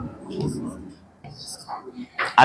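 A man's low, half-whispered muttering, much quieter than his normal speaking voice.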